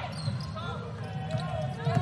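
A basketball being dribbled on a hardwood court, with short high sneaker squeaks and a steady murmur from the arena crowd.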